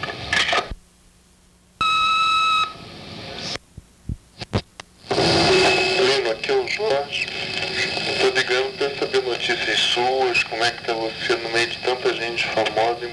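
Answering-machine beep: one high, steady tone under a second long about two seconds in, between two recorded phone messages. It is followed by a few clicks on the telephone line, and a caller's voice then comes in over the phone.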